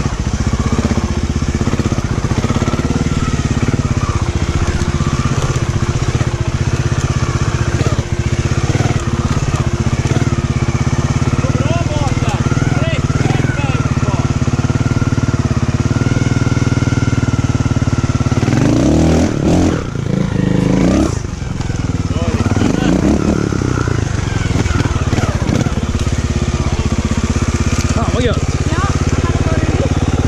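Trials motorcycle engine running at low revs through a slow section, with short bursts of throttle as the bike climbs over rocks and roots, heard close up on a helmet-mounted microphone. A rougher, uneven stretch comes about two thirds of the way through.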